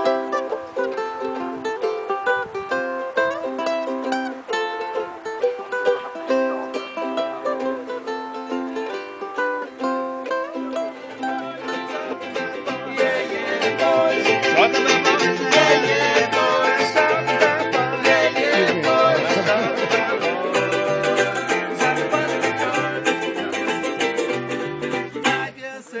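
Ukuleles being played, steady strummed chords and picked notes. About twelve seconds in it becomes louder and fuller, with a bass line stepping underneath the ukuleles.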